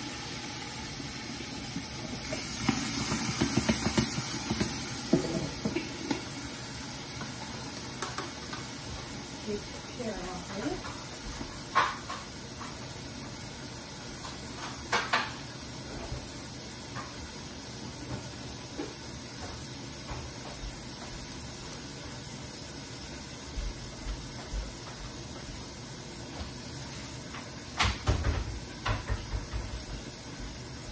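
Chinese cabbage and maitake mushrooms sizzling and steaming in a covered frying pan, with a stronger hiss a few seconds in. A few short knocks come near the middle and again near the end.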